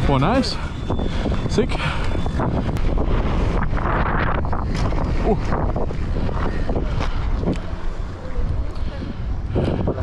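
Wind buffeting a chest-mounted action camera's microphone as a mountain bike rides fast down a dirt jump line, with the tyres rolling on loose dirt and the bike rattling and knocking over the bumps. The rider gives a short grunt about five seconds in.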